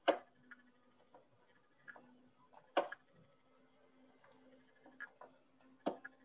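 Sharp single clicks from computer controls as moves are stepped through in chess software: three louder ones a few seconds apart, near the start, about three seconds in and near the end, with a few fainter clicks between.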